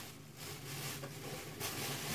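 Quiet room tone: a faint steady hiss with a low hum and no distinct events.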